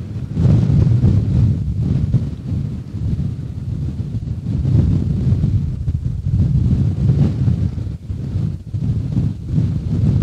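Wind buffeting the microphone: a loud, low rumbling that swells and drops in gusts.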